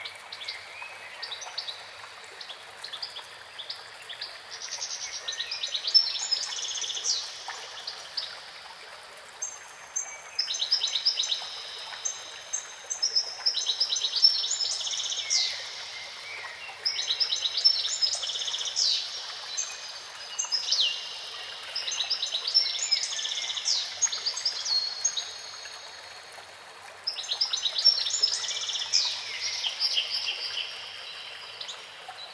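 A fountain jet splashing into a pool gives a steady rush of water. Over it a songbird sings repeated trilled phrases in bouts of a few seconds, with short pauses between them.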